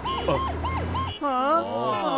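Cartoon police car siren sounding in quick repeated whoops, about five a second, over a low engine hum. Both cut off abruptly about a second in, and wavering pitched sounds follow.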